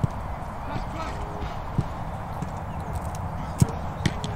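Footballs being kicked: three sharp thuds, near the start, about two seconds in and near the end, the last the loudest, over a steady outdoor background hiss.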